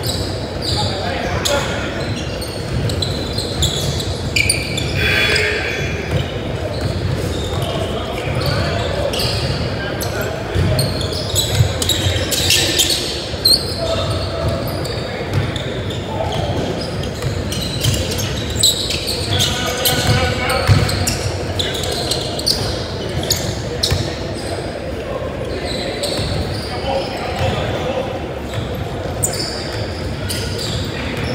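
Basketball bouncing on a hardwood gym floor with scattered sharp thuds, mixed with players calling out, all echoing in a large gym.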